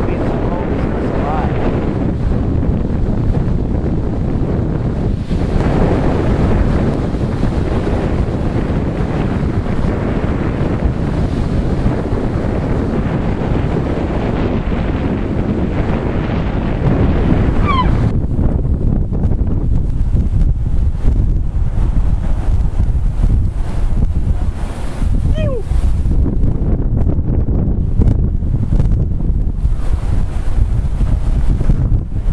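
Wind buffeting the microphone: a steady low rumble that gets louder a little past halfway through. Two faint, brief falling tones can be heard over it.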